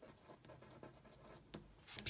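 Pen writing on a watercolour swatch card: faint, short scratching strokes as the colour names are written by hand.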